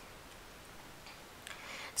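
A pause in the narration: faint steady background hiss of the recording, with a single small click about one and a half seconds in.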